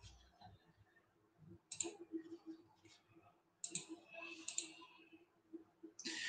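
Faint clicking and rustling at a computer, in two short clusters about two seconds in and around four seconds in, over a faint steady hum; otherwise near silence.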